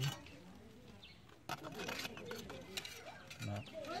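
A sharp metallic click about one and a half seconds in, then a few lighter clicks, as cut steel screw-flight discs are handled and pressed together by hand, with faint voices.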